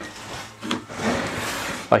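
Plywood mock-up fuel tank scraping against wooden cabinetry as it is tilted and slid down, with a knock about two-thirds of a second in and a longer steady scrape in the second half.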